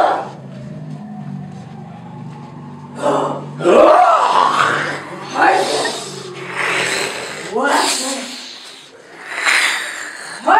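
Loud, wordless human cries and wails from performers, coming roughly once a second from about three seconds in, after a low steady drone during the first three seconds.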